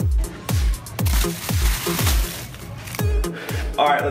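Background electronic dance music with a steady, deep kick drum about two beats a second and a hissing swell through the middle; a man's voice starts talking over it near the end.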